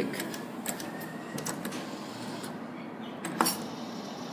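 Claw machine mechanism at work: scattered clicks over a steady background hum, with one sharp clack about three and a half seconds in as the claw comes down on the plush prizes.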